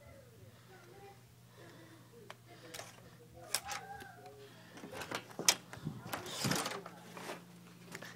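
Hotel keycard door lock and lever handle clicking and knocking as a door is unlocked and pushed open, with several sharp clicks from about three seconds in. Faint murmuring voices in the first half and a steady low electrical hum run underneath.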